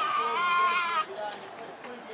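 Tasmanian devils giving a high, wavering whining call that lasts about a second and breaks off suddenly.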